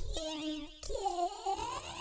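A drawn-out, wavering, cat-like wail, digitally warbled, standing in for a ghostly old woman's voice. It breaks off briefly just under a second in and then carries on.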